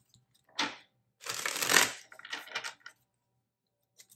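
A deck of tarot cards being shuffled and cards pulled from it: a short rustle, then a longer, louder burst of card noise about a second in, followed by lighter rustles.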